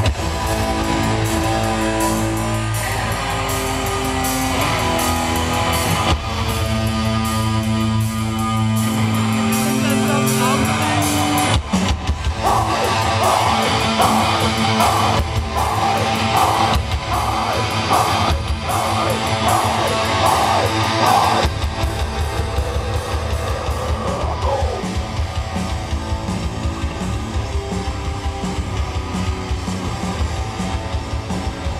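Live heavy metal band playing with electric guitars and a drum kit, loud and continuous, changing to a new section about twelve seconds in and again about twenty-one seconds in.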